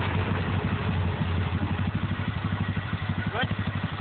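Yamaha Grizzly ATV's single-cylinder four-stroke engine idling with a steady, even pulsing beat.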